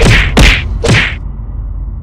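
Three loud whoosh-and-hit sound effects about half a second apart, each with a dropping low boom. A low rumble is left hanging after them.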